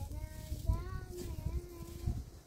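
A young girl singing a wordless tune, holding long notes that bend up and down, with an irregular low rumble underneath.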